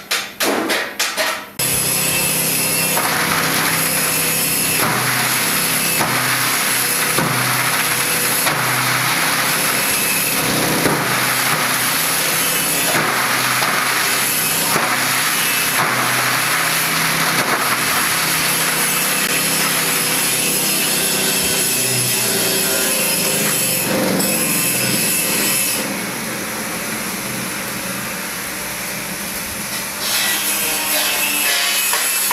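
Electric single-shaft shredder running under load: a steady motor hum beneath a continuous grinding, crunching noise as material is shredded. About 26 s in it drops in level and turns thinner and hissier.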